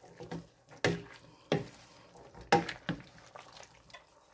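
Wooden spoon stirring browned lamb and chopped vegetables in a metal stew pot: a few short scrapes and knocks against the pot, over a faint sizzle from the cooking.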